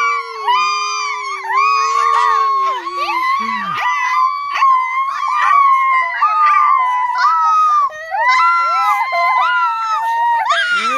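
Several children giving long, high-pitched playful shrieks and howls, overlapping almost without a break. A lower voice is held through the first three seconds, then drops away.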